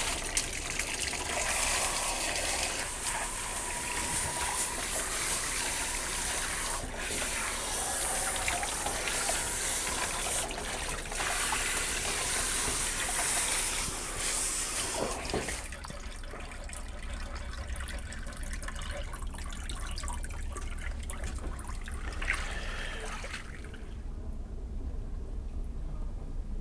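Pistol-grip hose spray nozzle rinsing shampoo out of a dog's coat in a grooming tub: a steady hiss of spraying and splashing water. About 15 seconds in the spray stops, leaving a quieter trickle of water in the tub that fades near the end.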